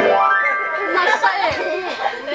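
A loud pitched sound that starts suddenly, glides upward in pitch over about half a second and then holds, with a voice mixed over it in the second half.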